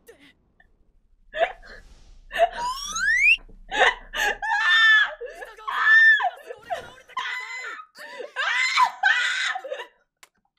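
A woman laughing hard in repeated, gasping bursts over dialogue from an anime episode.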